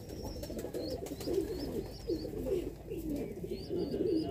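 Domestic pigeons cooing: a steady run of short, low coos repeating about two to three times a second.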